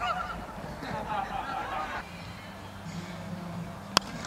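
Faint, distant wavering calls over a low steady hum, then a single sharp crack of a cricket bat striking the ball at the very end.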